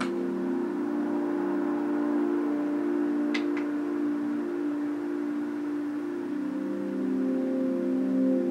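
Ambient drone music: sustained low chords that shift slowly every few seconds, with a brief bright tick near the start and another about three seconds in.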